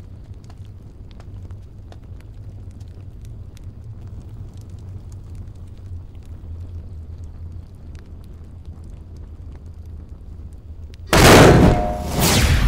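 A low, steady rumble with faint scattered ticks, then, about eleven seconds in, a sudden loud boom: a dramatic magic-burst sound effect as a carved dragon's eye lights up green.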